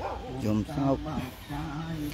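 A dog whimpering and yipping in a few short calls that bend up and down in pitch, in a pause between phrases of chanting.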